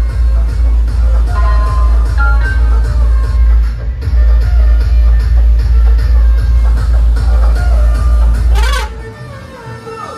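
Loud electronic dance music with a heavy, pounding bass beat played through a DJ truck's sound system. Near the end a quick sweeping effect cuts across it, then the bass drops out and the music goes quieter.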